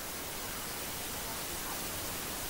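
Steady, even hiss of room tone and microphone noise, with nothing else heard.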